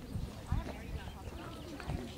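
Indistinct voices of people talking in the background, with a few dull low thumps.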